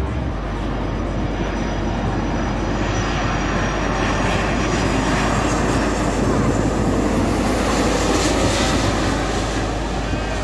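Twin-engine widebody jet airliner passing low overhead on landing approach with its gear down. The jet-engine noise builds steadily, carries a thin high whine partway through, is loudest in the second half and eases slightly near the end.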